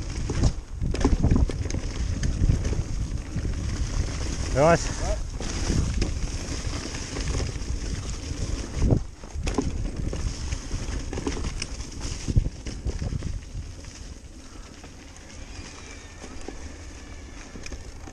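Full-suspension electric mountain bike ridden fast down a dirt and leaf-strewn trail: wind rushing over the handlebar camera's microphone, tyres rumbling over the ground, and the bike knocking and rattling over bumps. A short pitched tone wavers up and down about five seconds in, and the ride gets quieter in the last few seconds.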